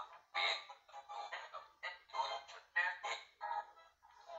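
A spirit box app on a phone, played through the phone's small speaker, sweeping through short chopped fragments of voices and music, with a new burst about every half second.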